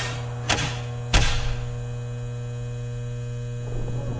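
Steady electrical hum with several low, evenly spaced overtones, broken by three sharp knocks within the first second and a bit. It is the noise left at the tail end of a rock recording once the playing has stopped.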